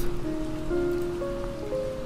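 Soft background music: a slow line of held notes, each changing about every half second, over a steady rain-like hiss.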